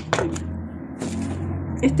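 Scissors cutting thin cardboard: a few quick snips, then a short rustling noise about a second in.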